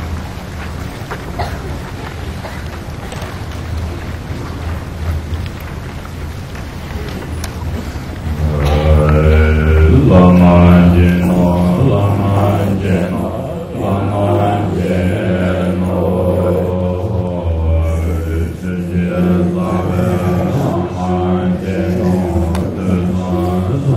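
A deep male voice chanting a Tibetan Buddhist prayer: a low, steady drone for the first eight seconds or so, then from about eight seconds in the chant comes in loud and full, in long held tones.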